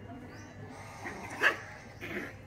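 A small black-and-white puppy giving one short yip about a second and a half in.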